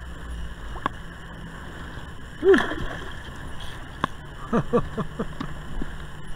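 Water lapping and gurgling against a kayak hull, with a few sharp light clicks. A man laughs about two and a half seconds in, and there are more short laughs near the end.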